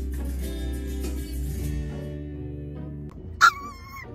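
Background music for the first three seconds, then a Yorkshire terrier puppy shut in a mesh backpack carrier gives a loud, high-pitched cry near the end. He is distressed at being confined, still not used to travelling in the carrier.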